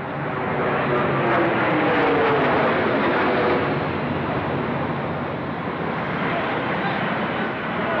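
A jet airliner, American Airlines Flight 11 (a Boeing 767), flying low overhead. Its engine noise swells within about a second and stays loud, and its pitch falls as it passes.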